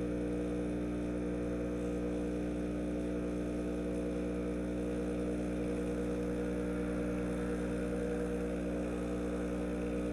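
Breville Dual Boiler espresso machine's vibratory pump humming steadily while it pulls an espresso shot.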